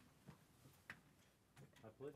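Near silence with a few faint clicks and knocks from people getting up out of office chairs; the sharpest click comes about a second in.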